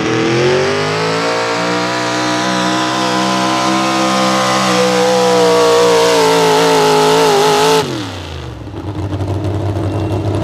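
Outlaw 4x4 pulling truck's unlimited-cubic-inch engine at full throttle dragging a weight-transfer sled. The revs climb over the first second, hold high and steady, wobble briefly, then fall off sharply about eight seconds in as the throttle is released at the end of the pull, leaving the engine running low.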